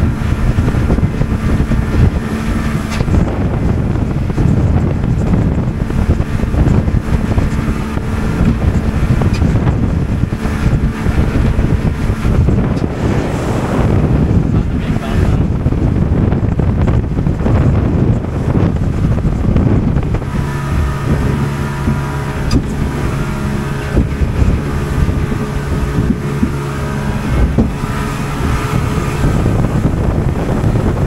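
Motorboat under way, its engine running steadily under heavy wind buffeting on the microphone. About two-thirds of the way in, the engine note settles lower.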